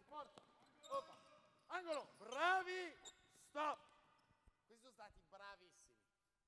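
Basketball drill on an indoor court: a ball bouncing a few times amid short, bending, high-pitched squeaks and calls from the players. The loudest of these comes about two and a half seconds in.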